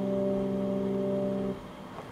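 Backing music: a sustained keyboard chord held steady, cutting off suddenly about one and a half seconds in, leaving only low room sound.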